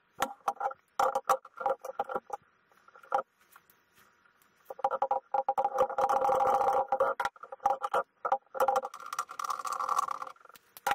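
Locking pliers clicking and scraping on the small spindle nut of a watchmaker's lathe as it is worked loose, in a run of sharp clicks and knocks. A steady hum comes and goes under the clicks, about a second in and again from about the middle.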